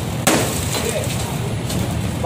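A hammer blow striking a wooden frame being knocked apart, one sharp loud crack about a quarter second in, with a fainter knock near the end. A low steady hum runs underneath.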